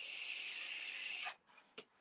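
A long, steady breathy hiss lasting about a second and a quarter, then stopping, from a person vaping close to the microphone.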